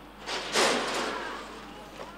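Horse-race starting gate doors banging open all at once: a loud crash about a quarter second in that fades over about a second.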